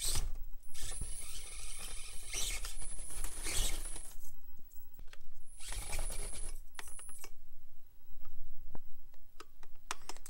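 Micro RC rock crawler (Axial AX24) climbing steps: its small electric motor and plastic gear drivetrain run with a thin high whine in two spells, about three seconds and then under two seconds, with sharp clicks and clatter of tyres and chassis on the steps. The drive sound stops about seven seconds in, leaving only scattered clicks; the driver thinks the battery died.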